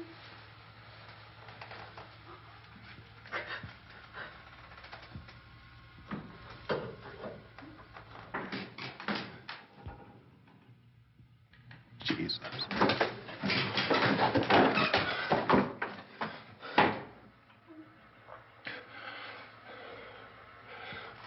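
A series of sharp knocks and clatters, scattered at first, then a dense, loud run of clattering about twelve seconds in that lasts some five seconds.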